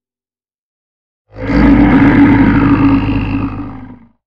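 A loud, deep beast-like roar sound effect for an animated logo. It starts suddenly about a second and a half in and lasts about two and a half seconds.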